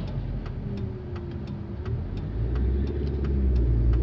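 Inside a car's cabin, the turn indicator ticks steadily over the car's idling engine as an oncoming car passes. About two seconds in, the engine note rises and grows louder as the car pulls away into a left turn.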